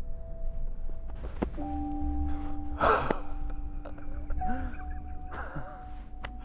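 Soft music of long held notes, over breathy gasps and laughs from two men embracing. The loudest gasp comes about three seconds in.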